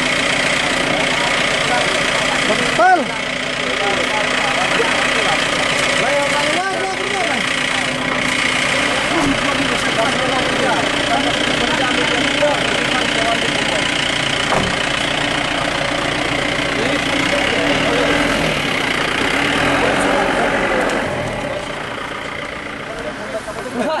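A vehicle engine idling steadily close by, under the scattered talk of a crowd of men; the engine sound drops away a few seconds before the end.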